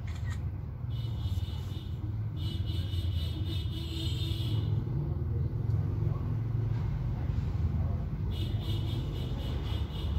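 A steady low rumble of outdoor background noise, with a faint high whine that comes and goes three times.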